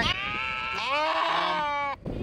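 Lamb bleating: one long, wavering call lasting nearly two seconds.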